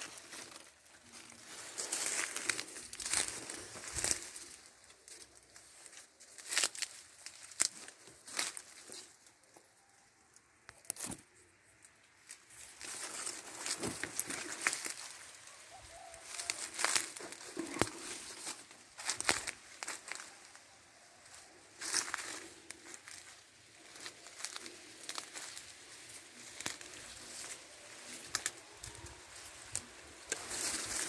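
Dry sugarcane leaves and dry grass rustling and crackling as someone pushes through and steps on them. It comes in irregular bursts of sharp crackles with short quieter lulls.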